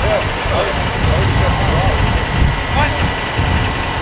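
Outdoor ambience: a steady low rumble with faint voices talking in short phrases over it.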